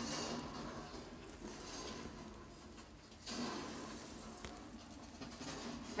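Quiet rustling and handling noise close to the microphone, as of the artificial tree's plastic branches being brushed, with a brief louder swell about three seconds in.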